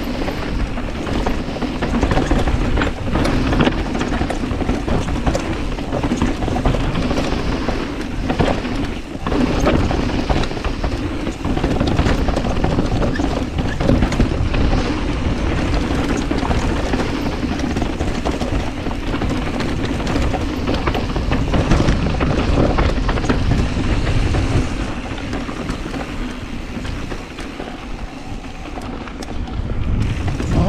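Specialized Status mountain bike descending a rocky dirt trail: steady, loud rolling noise from the tyres on gravel and stones, broken by frequent knocks and rattles as the bike hits rocks and roots.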